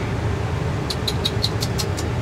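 Steady low rumble of a car idling with the air conditioning running, heard inside the cabin. About a second in comes a quick run of six light ticks.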